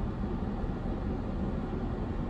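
Steady low rumble and hiss of a car's cabin background noise, heard from inside the car.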